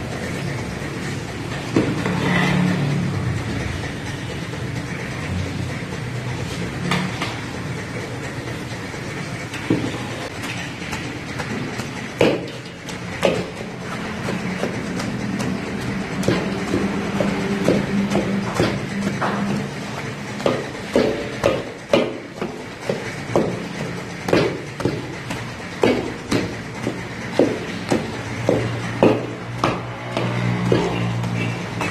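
Metal ladle knocking and scraping in a large steel karahi as boiled potatoes are mashed into the spiced ghee, over a steady rushing background. The knocks come more often in the second half, about one a second.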